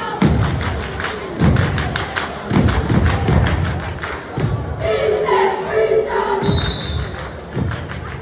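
Cheerleaders doing a stomp-and-clap cheer on a wooden gym floor: heavy stomps about once a second with sharp hand claps between them. Voices chant together in the middle.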